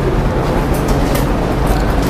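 Steady room noise in a classroom: a low rumble and hiss with a few faint clicks, and no voices.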